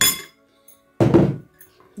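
A metal spoon clinks against a ceramic bowl, then about a second later a thunk as a bowl is set down on the table.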